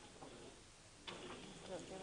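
Quiet room tone, then from about a second in faint murmured talk and a few small clicks, like paper and pen handling at a table.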